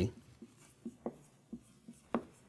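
Marker writing on a whiteboard: a handful of short, faint strokes as letters are drawn.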